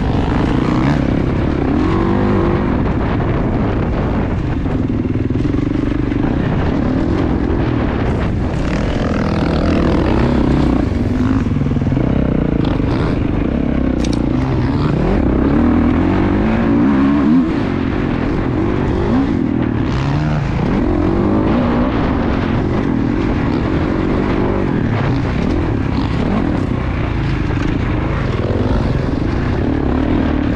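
Dirt bike engine revving up and down as the bike is ridden along an off-road trail, the pitch rising and falling with the throttle and gear changes, heard from the rider's helmet over a steady rumble.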